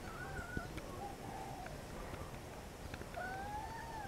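A domestic cat meowing faintly twice: a short call near the start and a longer call with a slight upward lilt near the end.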